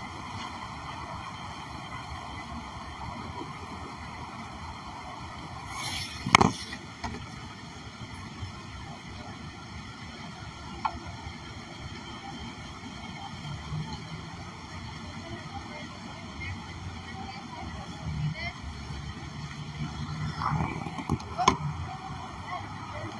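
Outdoor street ambience: a steady wash of traffic noise and distant voices, with one sharp knock about six seconds in, like the phone being bumped or set down.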